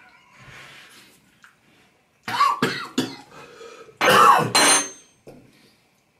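A man coughing in two loud bouts, about two seconds in and again at about four seconds, after a spoonful of scorpion pepper hot sauce catches him at the back of the throat.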